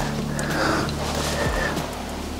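Background music with sustained low notes that change about one and a half seconds in.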